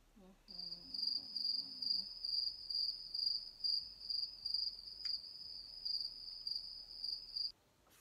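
Cricket chirping, a high, rapidly pulsing trill that starts about half a second in and cuts off abruptly near the end.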